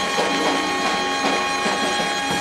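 Saxophones of a small live mambo combo holding steady notes of a closing chord over regular drum beats.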